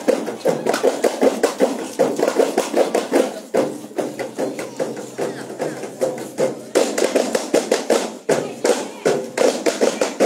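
Hand drums beaten in a quick, uneven rhythm, about three or four strokes a second, with crowd voices underneath.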